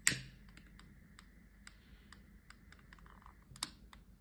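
Long-nosed utility lighter being clicked to light a candle. A sharp click at the start is followed by a string of lighter clicks and a double click near the end.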